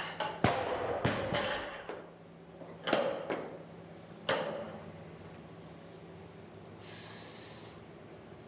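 A loaded barbell with bumper plates is dropped onto the lifting platform about half a second in, with a loud impact followed by a second or so of bouncing and rattling. A few more knocks follow as the bar settles and is handled on the floor, with the lifter's heavy breathing in between.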